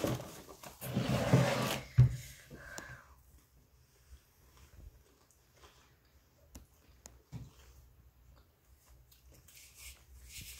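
A short rustle and one sharp knock in the first two seconds as the candy is handled. After that it is quiet, with faint small clicks of people chewing candy.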